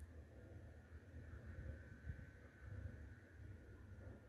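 Near silence, with only a faint low rumble and a faint steady high tone in the background.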